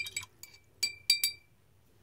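A paintbrush clinking against a small glass water jar: about six light, quick strikes over the first second and a half, each ringing briefly with the same bright tone.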